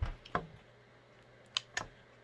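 Sharp metallic clicks from a stainless Ruger Super Redhawk Toklat revolver being handled as its cylinder is opened: two clicks near the start and a quick pair about a second and a half in.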